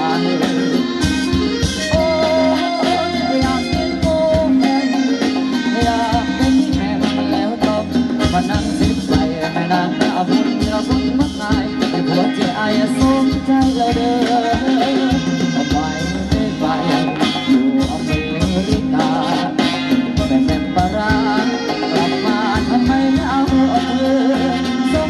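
Live Thai ramwong dance-band music: a singer over accompanying instruments and a steady percussion beat.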